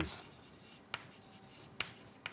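Chalk writing on a blackboard: two sharp taps, about a second and nearly two seconds in, over low room noise.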